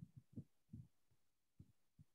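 Near silence broken by about half a dozen faint, soft, low thumps at uneven intervals.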